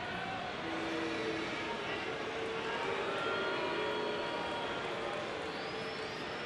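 Steady noise of a large ballpark crowd, with scattered individual shouts and calls rising out of it.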